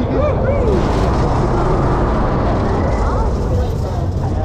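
A moving fairground ride: wind rushing over the microphone over a steady low rumble, the rush swelling about a second in. Riders' voices call out over it in rising-and-falling cries.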